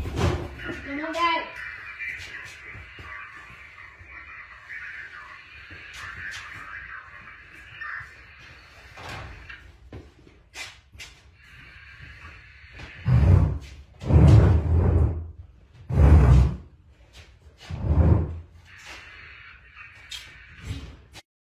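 Four loud, deep thumps about two seconds apart in the second half, each lasting under a second, after a stretch of scattered light knocks and clicks over a faint steady hiss.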